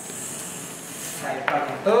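A soft, high hiss lasting about a second and fading out, then a person's voice starting near the end.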